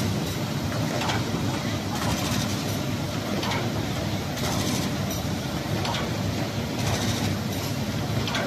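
Automatic folder gluer and stitcher machine running steadily, with a regular burst of noise about once a second as it cycles.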